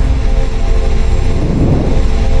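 Cinematic logo-intro sound effect: a deep, steady rumble under several held low tones.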